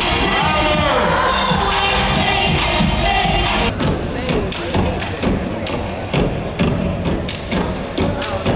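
Loud music with a voice over it for the first few seconds. About halfway in, a step team's stomps and claps take over in an uneven run of sharp hits.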